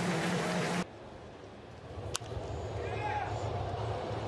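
Ballpark crowd noise, with one sharp crack of a bat hitting a foul ball about two seconds in. The crowd gets louder after it.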